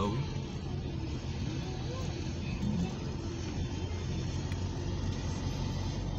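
Steady road and engine noise of a car, heard from inside the cabin while driving. Faint voices are underneath in the first half.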